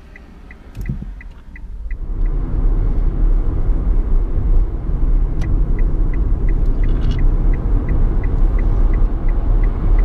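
Turn-signal indicator ticking about three times a second, then, after a cut, a steady low tyre and road rumble inside the electric Nissan Leaf's cabin at speed. The indicator ticks again from about halfway through.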